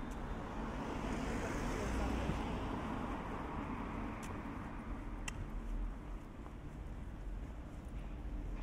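City street traffic noise: a car passing, its tyre noise swelling about two seconds in and fading away, over a steady low rumble of distant traffic.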